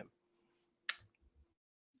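Near silence with a faint steady hum, broken by one sharp click a little under a second in.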